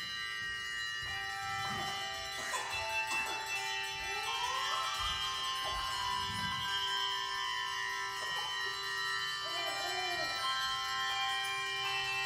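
Handbell choir ringing chords, the bells' tones held and overlapping as new notes come in.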